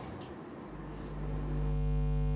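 Electrical mains hum, a low steady drone with a buzzy row of overtones, fades up from under a second in and holds steady: hum on the summit's videoconference audio feed as the line is opened.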